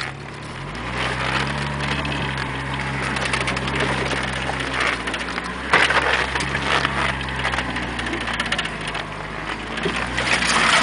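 Jeep engine pulling steadily off-road, heard from inside the cab; it picks up in pitch about a second in. Over it the body and loose gear rattle and clatter on the rough track, with a loud bang a little before the middle.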